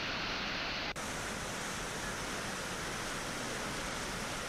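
Steady rushing of swollen floodwater. About a second in the sound dips briefly and resumes with a little more hiss.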